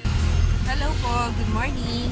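Steady low rumble of a moving vehicle's engine and road noise heard inside the cabin, with a woman's voice starting about halfway through.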